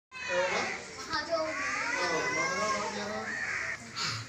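Several children's high-pitched voices speaking out together, overlapping.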